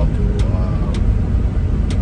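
Steady low rumble of road and engine noise inside a delivery van's cab while it is driving, with a couple of sharp clicks.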